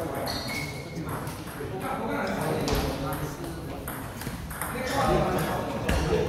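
Table tennis rally: the celluloid-type ball clicking off rubber-faced rackets and bouncing on the table in sharp, irregular ticks, with people talking in the background.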